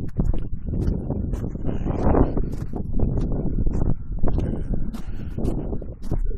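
Wind buffeting a handheld phone's microphone: an irregular low rumble with scattered knocks and rustles from handling.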